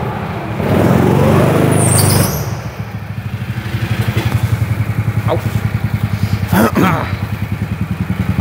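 Go-kart engine running, louder for a moment about a second in, then settling to an idle with a fast, even pulsing throb.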